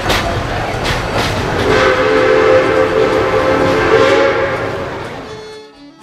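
Train rolling on rails with rattling clacks. A whistle chord sounds from about two seconds in to nearly five seconds, then the sound fades out as fiddle music begins at the very end.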